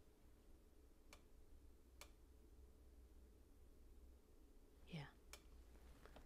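Near silence broken by three faint, sharp clicks of plastic LEGO pieces being handled and pressed together, the last one near the end.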